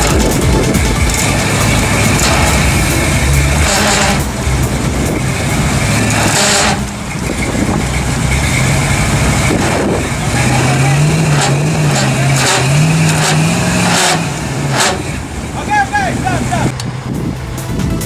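Chevrolet pickup truck's engine running, its pitch wavering up and down for a few seconds in the middle, with voices in the background.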